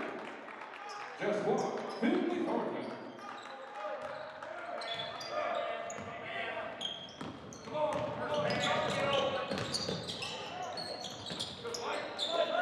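Basketball game sounds in a gym: a basketball bouncing on the hardwood floor and sneakers squeaking as players run and cut, with shouting voices echoing in the hall.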